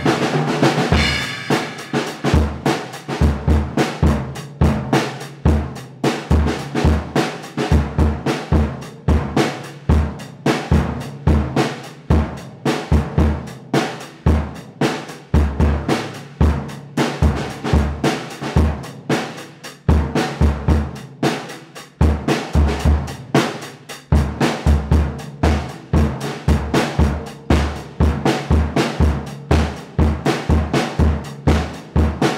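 A First Act acoustic drum kit played in a steady rock groove: regular bass drum kicks under snare hits and cymbals, with busier fills along the way.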